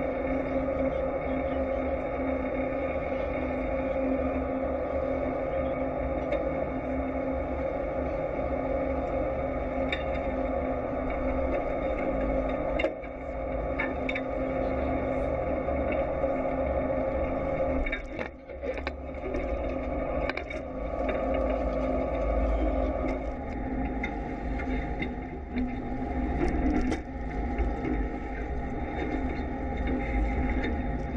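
Boat engine running with a steady drone, over a low rumble of wind and sea on the camera microphone; the level dips briefly about a third of the way in and again past the middle.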